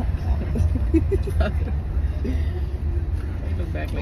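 Steady low rumble of a car's engine and road noise heard from inside the cabin, with brief, faint voices over it.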